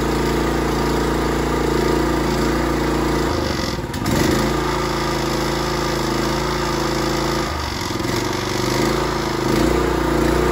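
Honda GX390 single-cylinder engine on a pressure washer running steadily. Its speed dips and recovers briefly twice, about three and a half and seven and a half seconds in.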